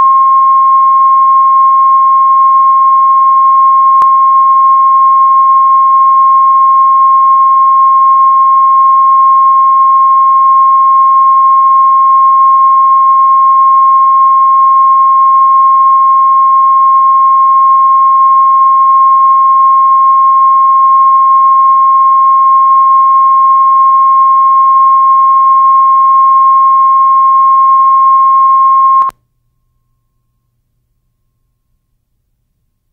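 Steady 1 kHz line-up tone that accompanies SMPTE colour bars on a videotape, used as the audio level reference. It is loud and unchanging, with a faint low hum beneath it, and cuts off suddenly near the end.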